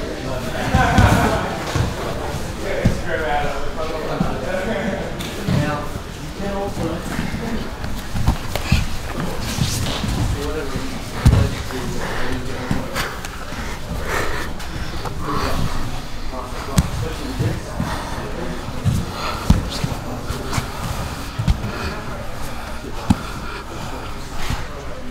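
Grappling on gym mats during a live no-gi roll: irregular thuds and slaps of bodies hitting the mats, the loudest about eleven seconds in, with voices echoing in a large training hall.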